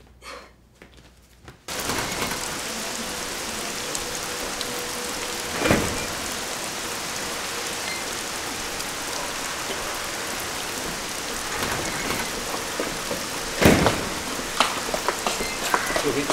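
Steady rain pouring down, starting suddenly a couple of seconds in after a quiet moment, with two louder sudden sounds, one a few seconds in and one near the end.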